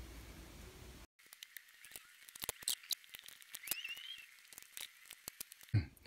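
Faint low hum for about a second, then a scattered run of sharp light clicks and taps from small parts and a spring clamp being handled on a workbench, with two brief faint squeaks in the middle.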